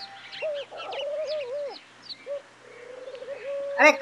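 Birds calling: a low, wavering call in two long stretches, with short high chirps scattered over it.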